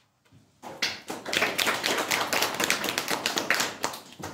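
Audience clapping: a burst of many hands applauding that starts about half a second in and dies away just before the end.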